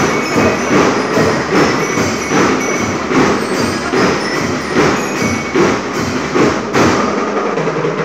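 School marching band of drums and bell lyres playing an even march beat, with drum strokes about two a second and bright lyre notes ringing over them.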